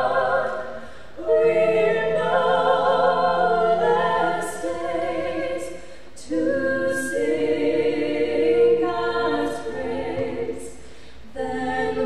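Three women's voices singing together a cappella, in long phrases with a short breath between each one, about every five seconds.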